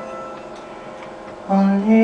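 Live band music at a soft moment: held piano and instrument tones fade quietly, then a female voice comes in singing a melody about a second and a half in.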